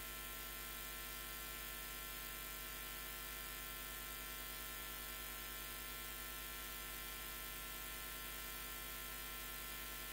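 Steady electrical mains hum with a faint hiss.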